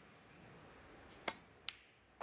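Two short, sharp clicks of snooker cue and balls striking, about half a second apart and a little over a second in, over a faint hush from the arena.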